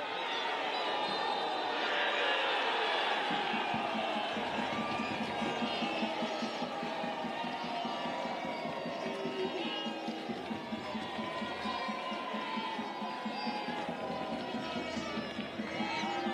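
Football spectators cheering and shouting after a goal, loudest a couple of seconds in, with many excited voices and a steady rhythmic beat carrying on underneath.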